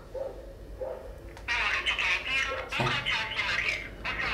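A thin, high-pitched voice coming out of a mobile phone's small speaker, starting about one and a half seconds in and running on in a quick, wavering chatter.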